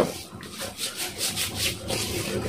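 Hands rubbing body serum into the skin of the arms: quick, rhythmic swishing strokes, about five a second.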